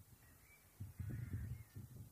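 Faint bird calls over a low, gusty rumble of wind on the microphone, loudest through the second half.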